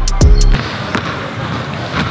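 Background music with a deep bass note that cuts off about half a second in, over a few sharp thuds of a basketball bouncing on a hardwood gym floor.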